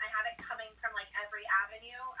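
Speech: a woman talking over a video call, her voice coming through a tablet's small speaker with a thin, telephone-like sound.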